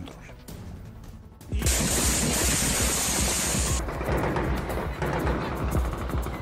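Dramatic music comes in suddenly about a second and a half in with a loud hissing rush, over rapid crackling bursts of gunfire.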